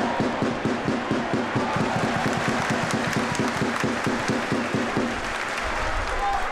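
Stadium crowd noise with a drum beaten steadily, about four beats a second, and scattered clapping. The drumming stops near the end.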